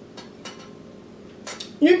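Cutlery clinking against a small plate: a few light taps, then a sharper clink near the end.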